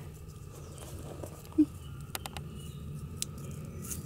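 Faint handling noise with a few light clicks, as a plastic clothespin is picked up and clipped onto tulle netting. The clicks are bunched together a little after halfway, with one more near the end.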